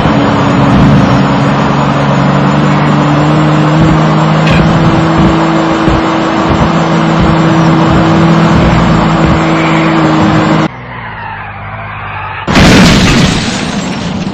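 Car engine running hard at high speed, a steady drone that rises slightly in pitch, which cuts off suddenly about eleven seconds in. Tyres screech next, with sliding pitches, and a loud crash follows about a second and a half later: a car crash sound effect.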